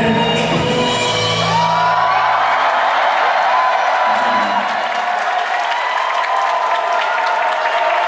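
A live pop song ends: the bass drops away about two to three seconds in, and a concert crowd cheering and screaming takes over.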